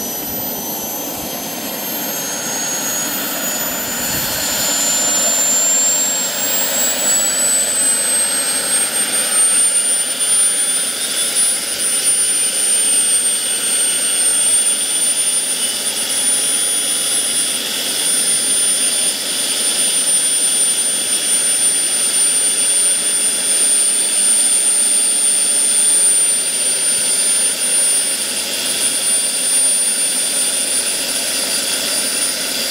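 Wren MW54 micro gas turbine in a radio-controlled Century Predator helicopter, running with a high whine that rises in pitch over roughly the first ten seconds and grows louder, then holds steady.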